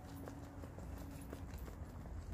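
Light, irregular taps of a small dog's booted paws as it walks over dry grass and dirt, over a low rumble.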